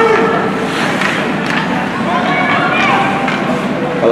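Indoor ice rink during a youth hockey game: a steady wash of skates and play on the ice, with distant voices calling out and echoing in the arena.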